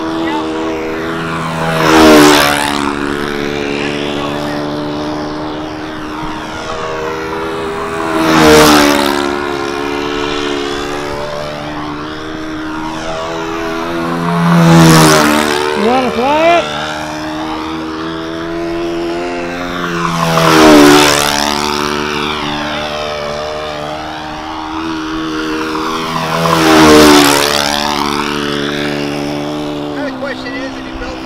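OS-91 four-stroke model engine with a 14-inch propeller, pulling a double-size Ringmaster control-line model around steady laps. The sound swells and then drops in pitch each time the plane passes, five times about six seconds apart.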